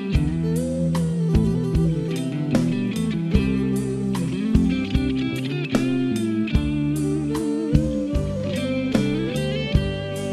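Song arrangement led by guitar, with gliding, bent notes over a steady drum beat and bass.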